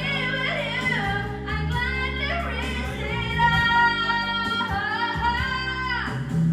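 A woman singing karaoke through a microphone over a backing track, holding long, steady notes.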